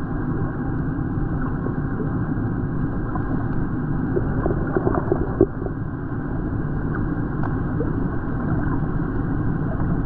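Steady low rumbling noise of a camera recording underwater, with scattered faint clicks and a short cluster of louder crackles about halfway through.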